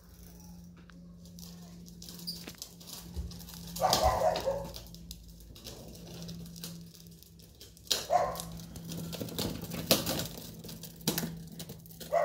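A dog barks twice in the background, about four and eight seconds in, over the light clatter and rattle of a pedal drift trike rolling across a rough concrete floor. A steady low hum runs underneath.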